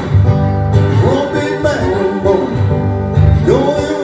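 Live blues with a steel-string acoustic guitar, and a man singing into a microphone, his voice sliding between notes about a second in and again near the end.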